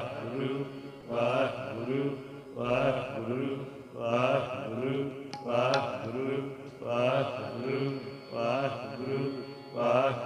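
Sikh shabad kirtan: men singing a devotional hymn in slow, repeating phrases about every second and a half, over the steady held chords of a harmonium. Two faint clicks sound a little past the middle.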